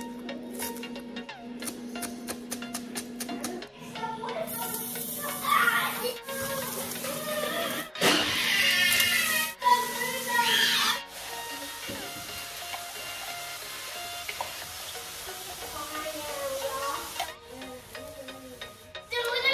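A knife chopping spring onions on a plastic cutting board in rapid taps, then sliced bitter melon going into a hot pan and sizzling steadily, loudest as the melon first goes in, over background music.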